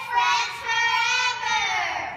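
A young girl's high voice holding one long, drawn-out note that sinks in pitch and fades near the end.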